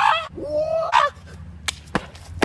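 A young man's loud, hoarse yell, then a second shorter cry that bends upward, both with a honk-like quality. A couple of sharp clicks follow near the end.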